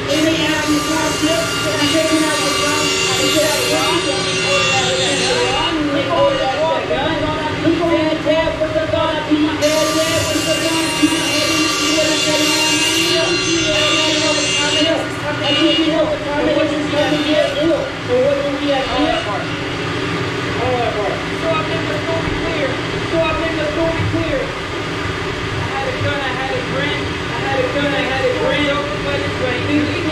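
A man's voice vocalising throughout without clear words, its pitch wavering, over a steady hum.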